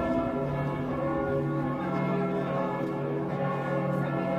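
Church bells of the Heiliggeistkirche pealing together, many overlapping bell tones sounding on steadily without a break.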